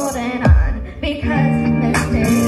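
Karaoke backing track playing through a PA speaker, with girls singing along into a microphone; a heavy beat lands about half a second in.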